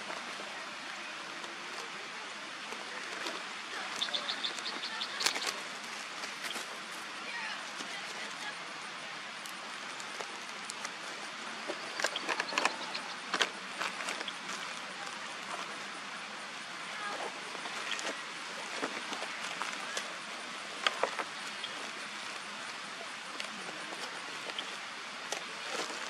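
Quiet outdoor background hiss with scattered short clicks. About four seconds in comes a brief run of quick, high-pitched chirps, which the listener wonders may be an osprey calling.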